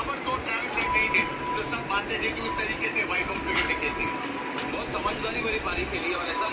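A television cricket broadcast playing in the room, with a steady background noise and faint voices, and a few light clicks of plastic toys being handled around the middle.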